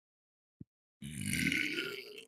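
A person belching into a microphone: one long, rough burp of over a second, starting about a second in, after a tiny click.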